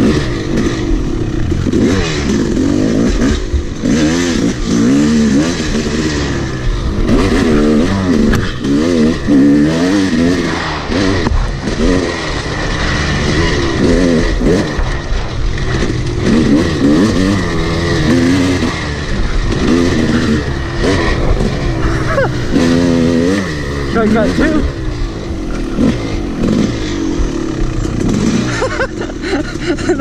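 Yamaha YZ250 two-stroke dirt bike engine, heard from the bike itself, revving up and down continuously as the throttle is worked over rough ground.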